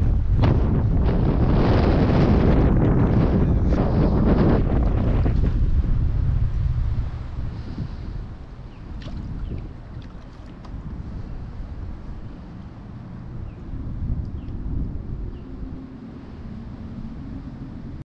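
Wind buffeting the microphone, a loud, low rumble, that drops away about seven seconds in to a much quieter, steady background.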